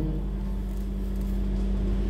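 Steady low hum with faint background noise of a large room, and no speech.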